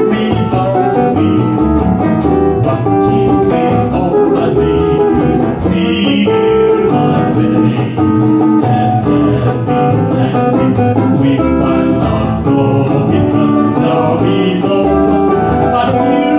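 Live acoustic guitar, upright double bass and piano playing together, a continuous instrumental passage of the song.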